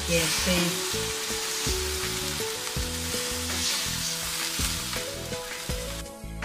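Water poured into a hot wok of stir-fried green beans and tomato sizzles loudly at first, then keeps frying steadily. A few knocks of the wooden spatula against the wok come through.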